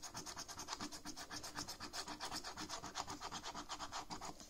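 A scratcher coin scraping the coating off a paper lottery scratchcard in rapid, even back-and-forth strokes.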